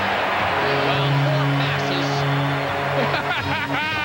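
Hockey arena crowd cheering, with a low, steady held tone sounding over it for about three seconds, typical of an arena goal horn or organ after a goal. A voice shouts near the end.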